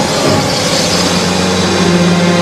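A car engine running, settling into a steady low hum about a second in.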